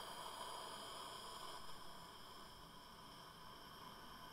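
Faint, steady hiss with a high whine of several even tones, slowly fading: low-level electronic background noise.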